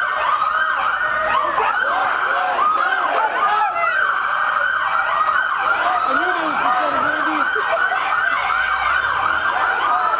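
Police car sirens yelping, with fast overlapping up-and-down pitch sweeps that keep going without a break.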